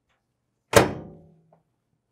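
A single sharp thunk about three-quarters of a second in, with a short ringing tail that dies away within about a second.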